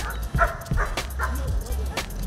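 A dog barking about four times in quick succession, over background music with a steady beat.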